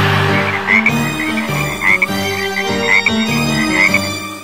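A chorus of frogs croaking in quick, repeated calls, over a backing music track with a stepping bass line.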